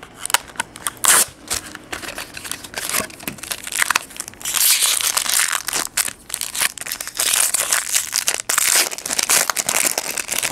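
Foil trading-card pack wrapper being crinkled and torn open by hand: irregular crackling and rustling, becoming a more continuous crinkle from about halfway through.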